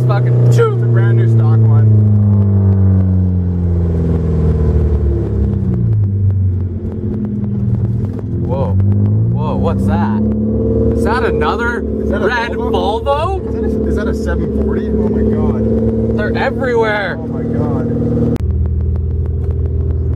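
Volvo red-block four-cylinder engine with a 2.5-inch side-pipe exhaust, heard from inside the car while driving. The engine note falls as the car slows over the first few seconds, then climbs again and holds steady, changing suddenly near the end.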